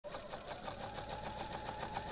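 Sewing machine running at speed: a rapid, even stitching clatter of about ten stitches a second over a steady hum.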